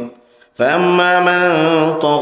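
A man's voice chanting a long, drawn-out melodic phrase into a microphone, the sung, recitation-style delivery of a Bangla waz sermon. It begins about half a second in, after a brief pause for breath.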